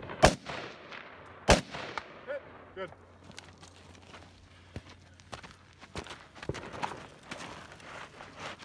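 Two rifle shots about a second and a quarter apart, each trailing a long echo, followed by scattered, much fainter clicks and knocks.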